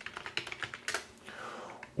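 Typing on a computer keyboard: a quick, uneven run of light key clicks that stops a little after a second in.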